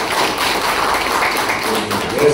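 Audience applauding: a dense patter of many hands clapping, thinning out near the end.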